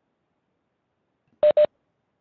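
Two short electronic beeps of the same pitch in quick succession, about a second and a half in: a video-conference platform's notification tone, of the kind sounded when a participant joins or leaves the call.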